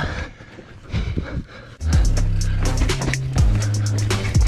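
A mountain bike rattles and knocks over rough, rocky trail for about two seconds. Then background music comes in with deep, sustained bass notes and a steady beat.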